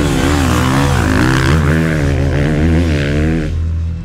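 Motocross bike engine revving on the track, its pitch rising and falling repeatedly as the throttle is worked. It cuts off about three and a half seconds in.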